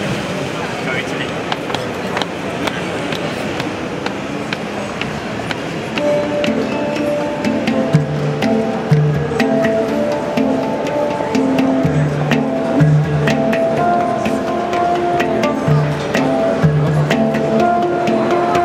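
Two hang drums (hand-hammered steel handpans) played with the hands, starting about six seconds in: ringing melodic notes over a repeating pattern of deep bass notes.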